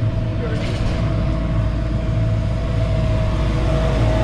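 Diesel engine of a wheeled excavator running close by: a steady low rumble with a steady whine above it.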